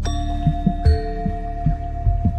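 Temple bells struck during aarti. One strike comes right at the start and another just under a second in, each ringing on, over a quick, steady low drum beat.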